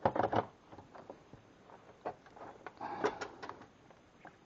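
Quiet, scattered clicks and plastic clatter from handling a cordless drill's battery pack and charger, with a small cluster of knocks about two to three seconds in; the drill motor is not running.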